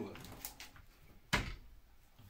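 DeWalt sliding mitre saw being worked by hand: a few light clicks, then a single sharp clunk a little past halfway as the saw head is moved.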